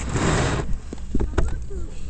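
A short rushing scrape of skis sliding on snow, followed by a few sharp clicks, over a steady low rumble of wind on the microphone.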